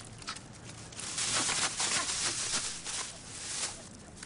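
Rustling with many light clicks from about a second in until near the end, from hands working at a pair of roller skates to fasten them.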